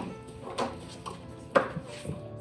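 Two short knocks, a softer one about half a second in and a sharper one about a second and a half in, from a wooden door with a lever handle being handled and swung, over faint background music.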